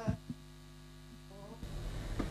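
Steady low electrical mains hum after a song's last note dies away, broken by a couple of faint clicks. Near the end the background noise rises.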